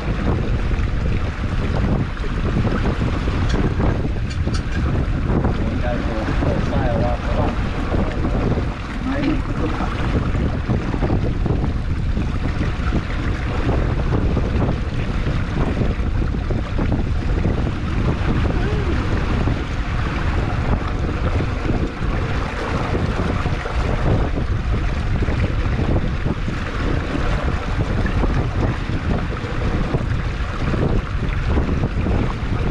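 Wind buffeting the microphone over the steady rush of water along the hull and wake of a wooden sailing dinghy under way.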